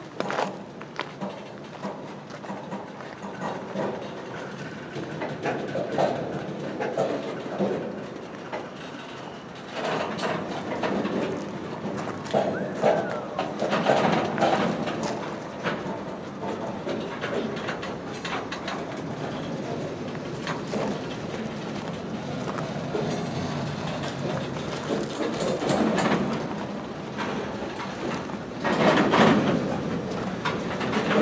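Loaded freight cars of a long train rolling slowly past at a crawl, their wheels clicking and clattering on the rails in an uneven, continuous rumble that swells at times.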